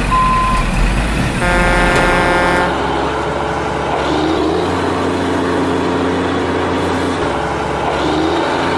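Truck sound effects: a short reversing beep at the start, then a horn toot of about a second, followed by a truck engine running steadily.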